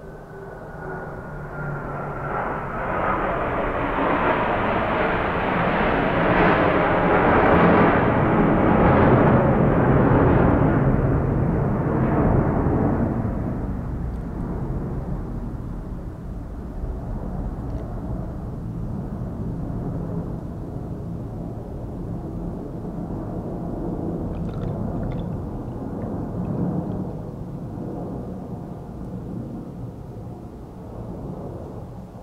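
Milk mixture pouring from a glass bowl into clear plastic popsicle molds. The stream of liquid splashing into the molds grows louder over the first few seconds, is loudest around ten seconds in, then carries on more quietly.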